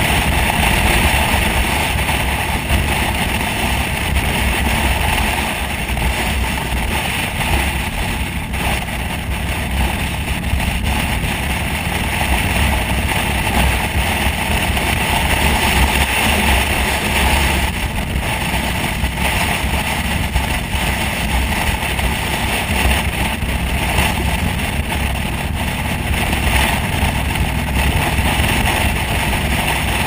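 Motorcycle cruising at road speed: a steady rush of wind over the microphone with the engine's low drone underneath, unchanging throughout.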